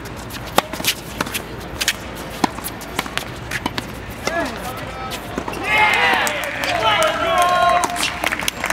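Doubles tennis rally on a hard court: sharp pops of racket strikes on the ball with quick footsteps. In the second half come loud shouts as the point ends.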